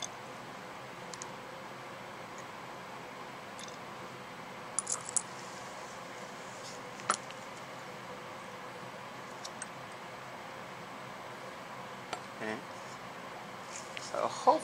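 Quiet steady room hum with scattered light clicks and clinks of glassware as sodium hydroxide solution is added to a glass test tube: a small cluster about five seconds in, the sharpest clink about seven seconds in, and two more near the end.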